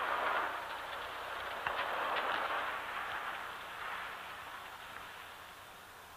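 A car driving at night: a steady hiss of tyre and road noise that fades away gradually, with a few faint clicks.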